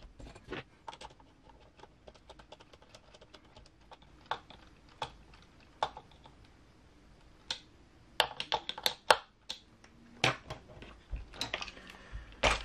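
Scattered sharp clicks and taps of plastic and metal parts being handled on a 1/10 RC rock crawler chassis and its wheels, sparse at first and then coming in a busier run about eight to ten seconds in.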